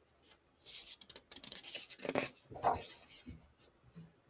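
Paper pages of a large picture book being handled and turned: a series of faint rustles and scrapes with a few sharp clicks.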